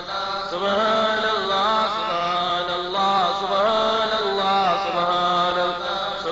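Sufi dhikr chanting: voices repeating a short melodic phrase in a steady cycle of about once a second.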